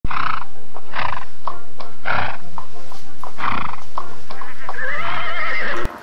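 Sound-effect horse: rough noisy bursts about once a second with light clicks of hooves between, then a wavering whinny near the end, with music under it.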